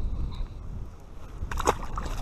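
Wind buffeting the microphone, then about one and a half seconds in a short splash as a released rainbow trout drops back into the water.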